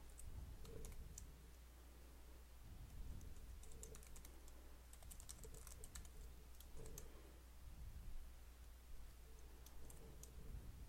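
Faint typing on a computer keyboard, keystrokes coming in several short bursts with pauses between them.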